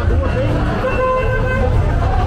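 Street crowd chatter with a short, steady car horn toot about a second in, lasting under a second.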